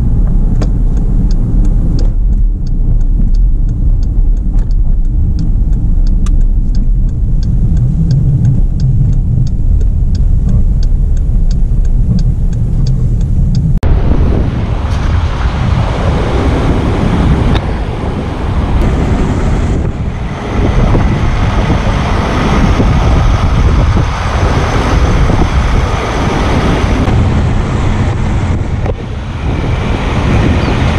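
Jeep engine and road noise heard from inside the cabin while towing a travel trailer, with a turn signal ticking regularly for several seconds. About halfway it cuts abruptly to loud outdoor wind on the microphone over vehicle noise.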